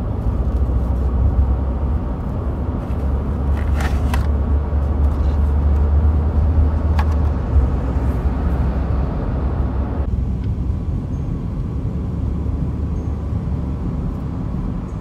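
Steady low rumble inside a car's cabin: engine and road noise. A few light clicks come around the middle.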